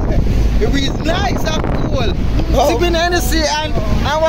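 People's voices talking in short stretches, over a steady low rumble of wind on the microphone.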